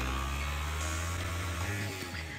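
Sport motorcycle engine held at steady high revs while the rear tyre spins in a burnout, a continuous drone.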